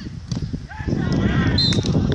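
Several voices shouting on a football pitch, building about a second in, over a steady low rumble.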